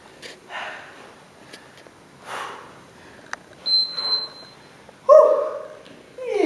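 A woman exercising, breathing out hard in short bursts as she works through crunch-punch sit-ups, then giving a short, loud pitched vocal cry about five seconds in. A steady high beep sounds for about a second midway.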